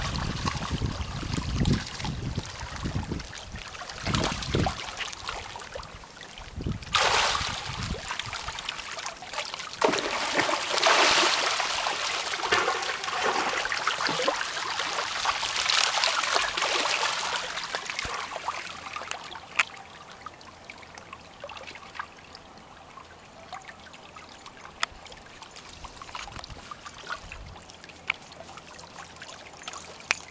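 A frenzied school of mullet splashing and churning the shallow water surface as jacks chase them. The splashing comes in surges through the first half, then dies down to a lighter patter.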